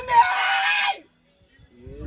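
A loud, harsh scream lasting about a second that cuts off suddenly, then a moment of quiet before a low voice starts near the end.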